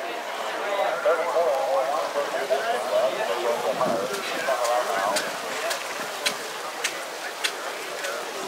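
Indistinct voices in the background, with no clear words. In the second half there is a run of sharp clicks, evenly spaced about twice a second.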